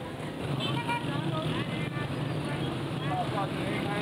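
Steady city traffic noise with indistinct voices over it.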